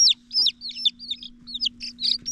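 Baby chick peeping: a quick run of short, high-pitched peeps, about five a second, each rising and then dropping in pitch.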